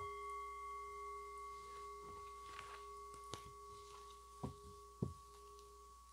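A chime is struck once and rings with a clear, bell-like tone of several overtones, fading slowly over the six seconds. A few soft clicks, tarot cards being gathered up, come in the second half.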